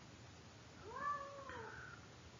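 A cat meowing once, faintly, a single call about a second long whose pitch rises and then falls.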